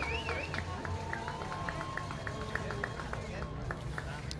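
Outdoor ambience at a football pitch: faint distant voices of people talking, over a steady low rumble. A series of short high chirps, several a second, runs from about a second in until just before the end.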